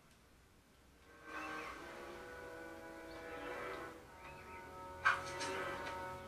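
Soundtrack of an animated-series trailer playing faintly: music with long held notes comes in about a second in, and a sharp hit sounds about five seconds in, the loudest moment.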